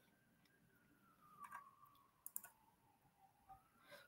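Near silence broken by a few faint computer clicks, about a second and a half and two and a half seconds in, as the presentation slides are changed.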